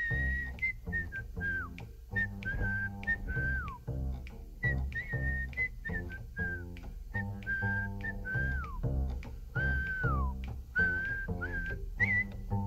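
A jazz melody whistled, clear high notes in short repeated phrases that end in downward slides, over a walking double bass and drums with regular cymbal ticks.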